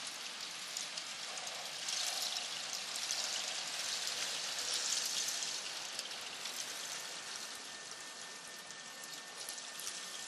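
Graupel (soft hail) falling: a steady hiss of countless tiny pellet ticks, swelling from about two seconds in, loudest near five seconds, then easing off.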